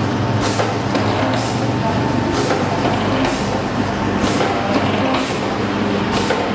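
Liquid sachet packing machine running in its cycle. About once a second there is a sharp hiss of air from its pneumatic cylinders, over a steady electrical hum.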